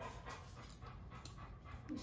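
A dog's faint heavy breathing, panting.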